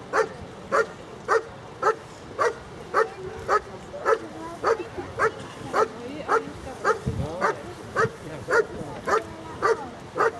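A German Shepherd barking steadily and rhythmically at a protection helper, about two sharp barks a second without a break. This is the 'bark and hold' in the blind, where the dog guards the helper by barking without biting until the handler arrives.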